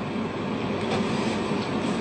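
Steady background noise, an even rushing hiss with no speech and no distinct events.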